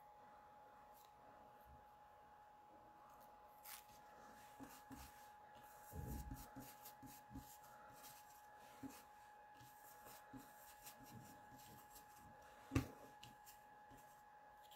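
Near silence with a faint steady hum: soft scratchy dabbing and rubbing of an ink blending tool on card, with one sharper click near the end.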